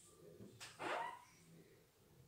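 A single short bark-like animal call, rising in pitch, about three quarters of a second in, over faint room sound.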